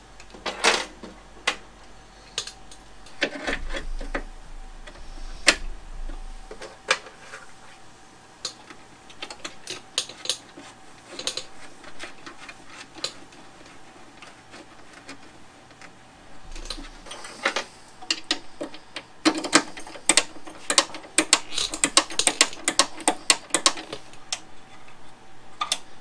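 Hand tools and metal parts clicking and knocking against a Vespa scooter's steel body during hand work, in irregular taps. Near the end comes a long run of rapid clicks lasting several seconds.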